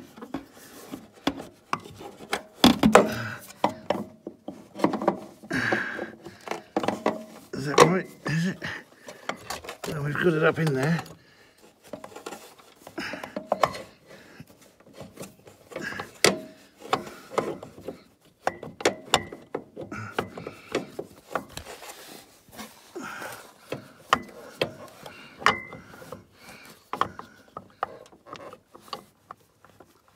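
Snowmobile starter motor being worked by hand into its mounting bore in the aluminium engine casing: irregular metal clicks, knocks and rubbing as it is lined up, with some low voice sounds from the mechanic.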